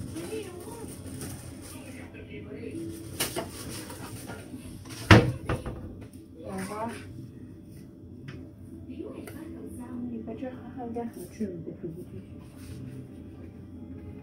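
Faint voices in a small room while a chocolate cake is cut with a knife on a plate. A single sharp knock, the loudest sound, comes about five seconds in.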